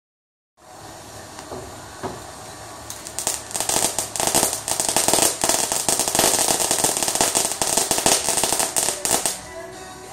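Ground firework set off on concrete: a faint hiss as the fuse burns, then from about three seconds in a dense run of rapid crackling pops lasting about six seconds, which stops suddenly. Totally loud.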